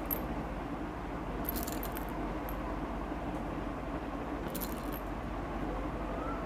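Bangles on a woman's wrists jingling in a few short bursts as her hands move, over a steady low background hum.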